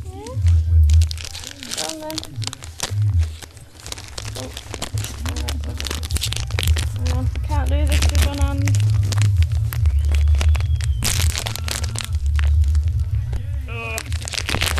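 A dog tearing and nosing at plastic treat packets and wrapping paper, a dense run of rustling, ripping and short sharp noises.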